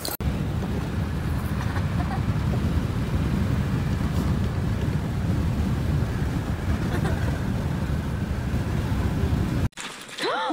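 Wind buffeting through an open window of a moving car, with road noise, making a steady, loud low rumble. It cuts off suddenly near the end.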